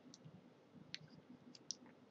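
Near silence: room tone with a few faint, short clicks, the sharpest near the end.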